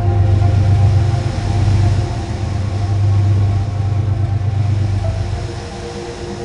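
Passenger train passing close by: a loud, low rumble of the cars running on the rails that eases off near the end.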